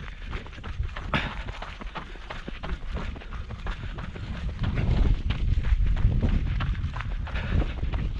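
Footfalls of a person running on a dirt and gravel track: a steady run of short crunching steps. A low rumble on the microphone grows louder about halfway through.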